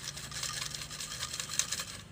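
Folded paper slips rattling inside a glass jar as it is shaken, a rapid, dense rustle that stops near the end.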